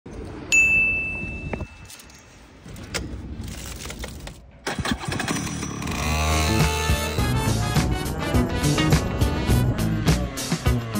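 A shrill, steady beep lasting about a second near the start. Then, about five seconds in, a go-kart engine starts up and runs, and from about six seconds background music comes in and becomes the loudest sound.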